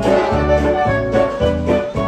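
Band music: an instrumental passage between sung lines, sustained melody notes over a steady bass beat.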